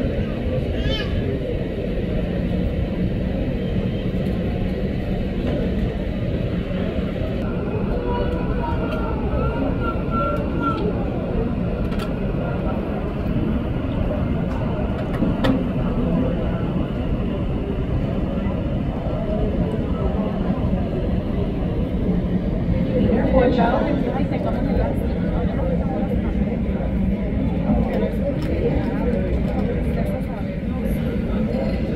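Airport ambience: airliner jet engines running at taxi power, a steady rumble with a faint whine, swelling briefly about two-thirds through, under indistinct background voices.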